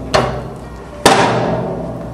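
Morso mitre guillotine's foot pedal springing back to its rest position: a knock, then about a second later a loud metallic clang that rings on as the bar strikes its stop. It is an annoying metallic noise, a sign that there is no felt damping between the bar and its stop.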